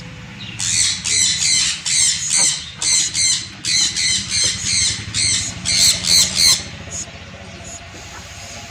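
Green-cheeked conures in a nest box giving a fast, even run of high squawking calls, about three a second, which stops about six and a half seconds in; an adult is feeding a newly hatched chick.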